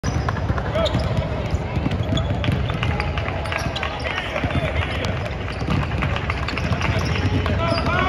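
Several basketballs being dribbled at once on a hardwood court, a busy, irregular patter of bounces during a ball-handling drill, with voices talking in the background.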